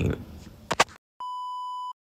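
A single steady electronic bleep tone, high and pure, holding for about two-thirds of a second and cutting off sharply against dead silence. It comes just after two brief clicks.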